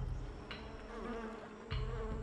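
Flies buzzing around carrion in a steady drone, with a low rumble coming in near the end.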